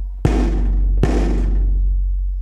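A large hide-headed hand drum struck twice with a wooden stick, about a second apart. Each stroke is a deep boom that rings on and fades.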